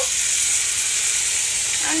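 Golden apple slices and spices sizzling steadily in a hot non-stick pan of mustard oil, with a little water just poured in.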